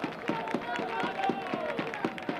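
Sound from the football pitch during a goal celebration: distant voices of players calling out, with a few scattered claps.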